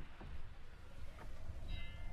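A quiet pause: faint low hum, with faint background music. A few soft held tones come in near the end.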